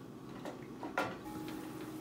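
Wooden spoon stirring diced vegetables and lentils in a stainless steel sauté pan, with a couple of light knocks of the spoon against the pan, the clearest about a second in.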